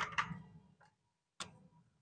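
A few faint, short clicks and taps from felt-tip markers being handled and swapped: a small cluster at the start and a single click about one and a half seconds in.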